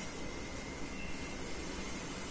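Steady background hiss with a faint, constant high-pitched whine, and a brief fainter tone about a second in.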